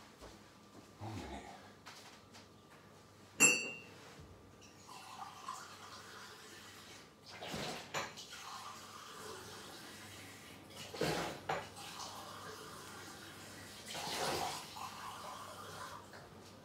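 Off-camera kitchen handling noise: a single sharp clink with a short ring about three and a half seconds in, then a few softer clatters and rustles.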